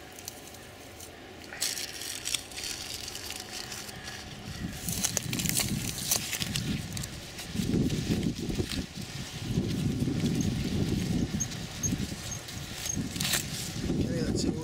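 Paper apple bag crinkling and rustling on the branch as hands work it loose, with scattered sharp crackles. A louder muffled low handling noise fills the second half.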